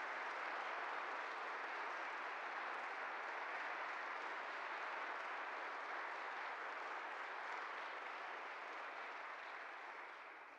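Audience applauding, a steady even clatter of many hands that eases slightly near the end.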